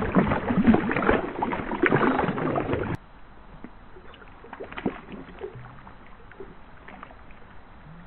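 A Boston Terrier splashing hard through shallow pond water close to the microphone, a dense churning that stops abruptly about three seconds in. After that only faint drips and lapping of rippling water remain.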